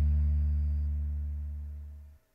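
Final chord of an acoustic guitar ringing out and dying away steadily, its low notes the strongest.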